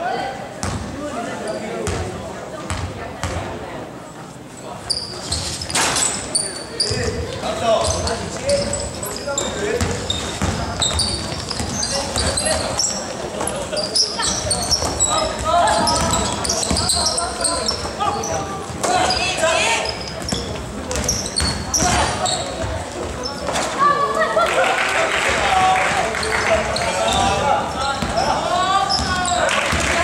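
Basketball bouncing on a hardwood gym floor during play, with players and spectators calling out, echoing in the hall. The voices grow louder near the end.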